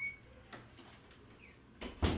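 Hinged interior bathroom door being pushed shut: a brief high squeak at the start, a faint click about half a second in, and a sharper knock near the end as the door meets the frame.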